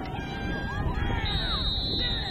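Spectators and players shouting and calling out over outdoor field noise, with a single high, steady referee's whistle blast lasting about a second in the second half.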